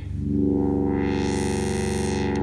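Virtual analog Minimoog-model synthesizer, built in Faust and running on an Analog Devices SHARC Audio Module, holding one low note while its filter cutoff is swept by MIDI: the tone brightens towards the middle and goes dull again by the end.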